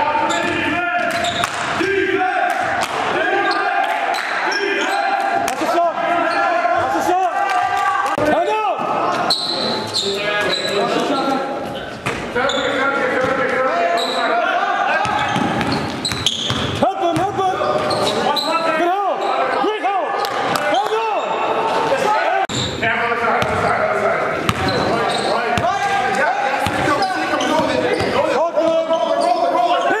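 Live court sound of an indoor basketball game, echoing in a large gym: the ball bouncing on the hardwood, sneakers squeaking in short chirps, and players' voices calling out.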